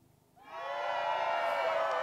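A crowd sound effect played from a podcast soundboard: many voices together, fading in about half a second in and held steadily.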